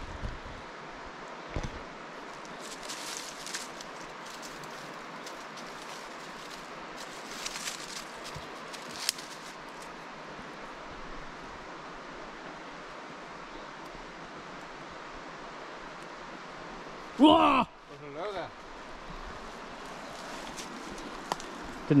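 Steady rush of shallow river water running over stones, with a few faint crackles of rustling undergrowth. About seventeen seconds in, a man lets out a loud, brief yell to startle someone, and a shorter voice answers a moment later.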